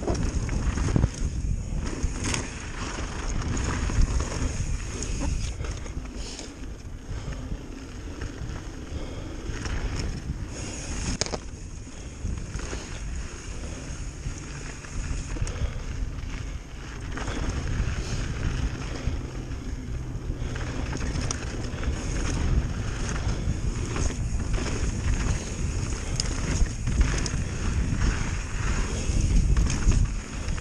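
Pivot Firebird mountain bike descending a rocky dirt trail: tyres crunching over gravel and stones, the bike rattling, with sharp knocks over rocks now and then. Wind buffets the action-camera microphone throughout.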